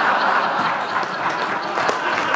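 Audience laughing and clapping in a large hall.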